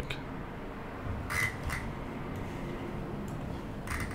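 Quiet room tone with a steady low hum, broken about a second and a half in by a short soft click-like noise and a fainter one just after it.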